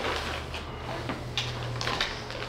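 Packaging being handled: a plastic package rustling and hard PVC frame pieces knocking lightly together, with a few small clicks about two-thirds of the way in and near the end, over a steady low hum.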